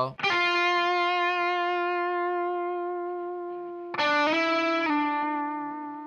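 Electric guitar (Fender Telecaster) playing two licks on one string at a time. The first is a note quickly pulled off to the note two frets lower, which rings for about four seconds with a slight vibrato. About four seconds in comes a second picked note, slid up a whole step and back down, then left to fade.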